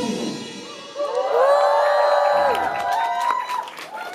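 A live band's last chord dies away, then a long, high-pitched cheer from the audience rises and is held for about two seconds as scattered clapping begins: the crowd reacting to the end of the song.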